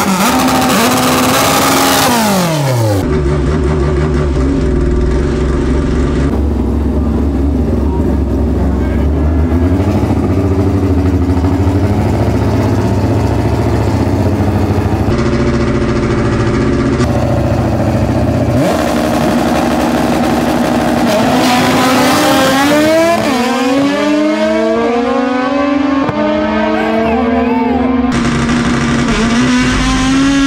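Naturally aspirated Honda Civic drag car's engine at full volume. Revs fall away at first, then it holds a steady low note. From about two-thirds of the way in it launches and pulls hard, revs rising sharply and dropping at each upshift, heard from inside the cabin.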